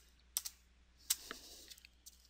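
A few keystrokes on a computer keyboard, a pair of quick clicks about a third of a second in and another pair about a second in: the Ctrl+Shift+Enter shortcut being pressed to add a parallel branch to the ladder rung.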